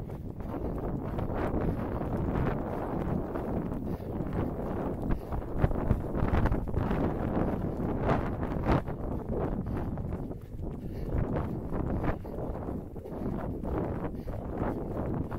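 Wind buffeting a body-worn camera's microphone while its wearer runs, a steady rumbling rush with scattered thuds of footfalls on tarmac.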